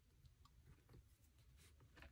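Near silence with a few faint, short ticks and rustles as fingers peel and press a paper sticker onto a planner page.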